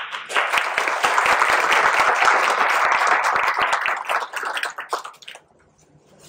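Audience applauding, dense clapping that thins and dies away about five seconds in.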